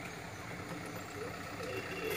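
Steady outdoor background hum, with faint indistinct voices in the distance.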